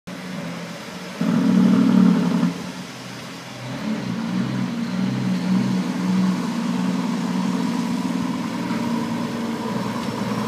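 Heavy-haul truck's diesel engine under load, loudest between about one and two and a half seconds in, then dropping and building back up to a steady run from about four seconds in.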